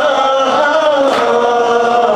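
A man chanting a Shia mourning lament (latmiya) in Arabic into a microphone, holding long wavering notes. A short sharp beat cuts through about a second in.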